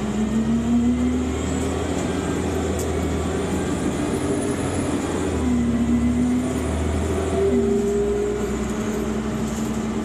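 Cummins Westport ISC-280 engine and ZF Ecomat automatic transmission of a 2001 New Flyer D40LF city bus, heard from inside the passenger cabin while the bus is under way. The engine note climbs and eases off, then about three-quarters of the way through it steps down in pitch and starts climbing again, over steady road rumble.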